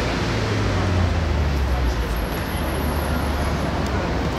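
Outdoor urban background during a small-sided football game: a steady low rumble with indistinct, distant voices of players on the court. A faint high whine sounds through the middle.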